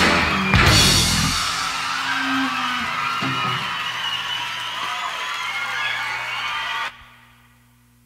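Live rock band with electric guitars, bass and drum kit striking its closing hit, the sound ringing out and thinning for several seconds. It then cuts off abruptly about seven seconds in, leaving only a faint steady hum.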